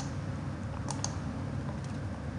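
Computer mouse clicks: one at the start, a quick pair about a second in, and a faint one near the end, over a steady low background hum.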